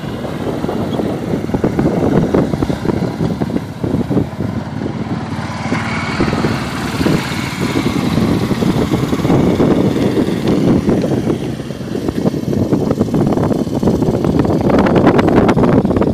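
A John Deere Gator utility vehicle's engine running as it tows a rotary brush over a sanded putting green, a steady mechanical drone that dips briefly and grows a little louder near the end.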